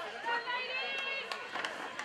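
Indistinct chatter and calls from spectators and players at an outdoor rugby pitch, several voices overlapping, with a few sharp clicks.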